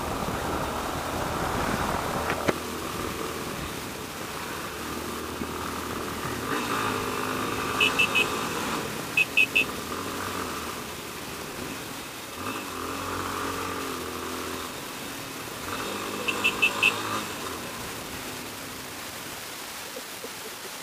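Yamaha Ténéré 250's single-cylinder engine running in slow traffic, revving up several times as the bike pulls away, over the general noise of surrounding traffic. Short high beeps come in quick groups of three, twice around eight to nine seconds in and again near the end.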